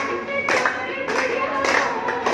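A group clapping hands in steady time, about two claps a second, along with a devotional aarti song.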